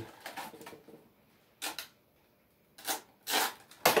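A few short rustles and clicks, spaced about a second apart, from a small cardboard box of brad nails being handled and opened.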